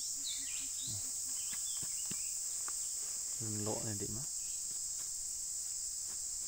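A steady high-pitched insect drone with a few soft thuds from a small axe blade chopping into dry dirt.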